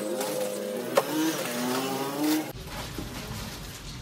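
A vehicle engine revving, its pitch rising twice and cutting off about two and a half seconds in. Sharp knocks land at the start and about a second in.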